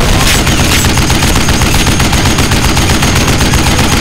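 Film battle-scene sound effects: rapid automatic gunfire, a dense, continuous rattle of shots.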